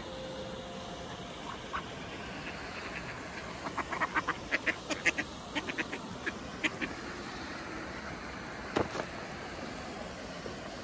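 Mallard ducks quacking: a rapid run of short quacks lasting about three seconds, over steady background noise. A sharp double knock near the end.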